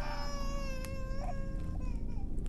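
A high-pitched wailing cry, held on one pitch for about a second and then tailing off.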